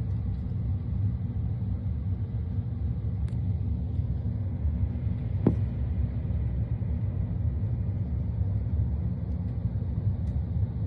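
A steady low rumble, with one faint click about five and a half seconds in.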